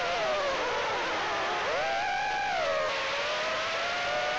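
Brushless motors and propellers of a BetaFPV HX115 3-inch quadcopter whining in flight, over a steady hiss. The pitch falls, climbs again about halfway through, then dips and rises as the throttle changes.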